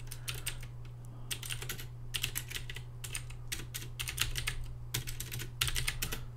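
Typing on a computer keyboard: irregular runs of quick keystrokes, with a steady low hum underneath.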